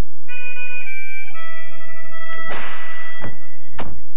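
Commercial end-card sound effects: sustained electronic chime tones that shift pitch twice, then a whoosh about two and a half seconds in and two sharp thuds near the end.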